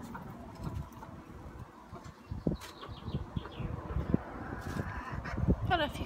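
Backyard chickens clucking in their run, with a quick string of short calls about halfway through and louder calls near the end.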